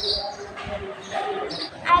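Quiet talking with a few soft low thumps spread through it.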